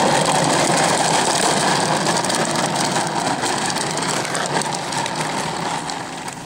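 Hard plastic wheels of a toddler's ride-on toy motorcycle rolling over asphalt: a loud, steady grinding rumble that eases a little towards the end.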